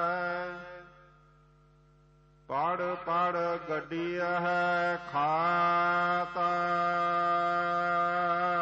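Gurbani verses sung in a slow chanting style over a steady drone. The voice holds a long wavering note that fades out about a second in. The quiet drone carries on alone, and the voice comes back about two and a half seconds in, sliding up into the next line.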